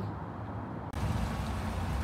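Steady low rumble and hiss of background noise, with no distinct event. It becomes louder and brighter about a second in.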